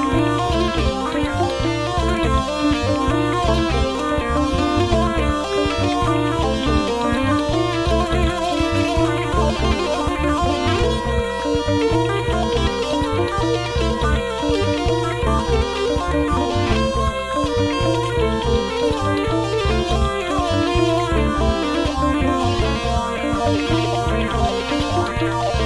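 Electro-acoustic hurdy-gurdy played live: a cranked-wheel melody over steady drones, with a regular rhythmic pulse throughout.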